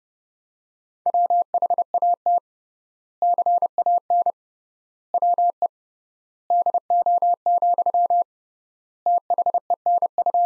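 Morse code sent at 30 words per minute as a single steady beep keyed on and off, in five word groups with long gaps between them: the sentence "What can we do then", the last word running on past the end.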